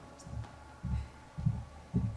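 Footsteps of a person walking up to a stage, a low thud about every half second, over a faint steady hum.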